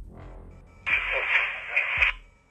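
Two-way radio transmission: about a second in, a burst of walkie-talkie static with a faint, unclear voice in it, which cuts off suddenly. Before it there is a low rumble.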